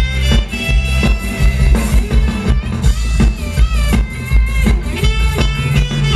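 Amplified live band playing ramwong dance music, with heavy bass and a steady, fast drum beat.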